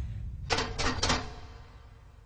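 Metal cell bars rattled by hand: a quick run of three or four clanks with a short metallic ring about half a second in, over the fading low rumble of a blast just before.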